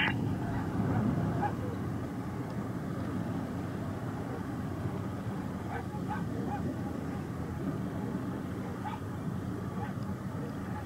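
Jet engines of a Boeing 787-8 airliner, a low rumble slowly fading as it climbs away after takeoff, with a few faint short calls over it.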